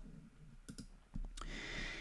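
A few faint computer mouse clicks, then a soft hiss in the second half.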